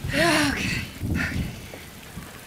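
A woman's drawn-out cry of pain, falling in pitch, then a short breathy exhale about a second in, as she breathes through a labour contraction.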